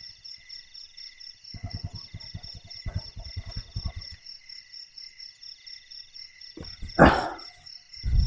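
Crickets and other night insects chirping steadily in several high, pulsing tones. A quick run of low clicks or rustles comes in the middle, and a brief louder sound comes about seven seconds in.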